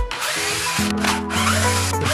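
Cordless drill-driver running, unscrewing a screw from a Stihl FS38 trimmer engine's housing, with a short break about halfway through. Background music plays throughout.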